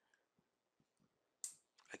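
Near silence with a few faint short clicks and a brief breath-like hiss near the end, just before the narration resumes.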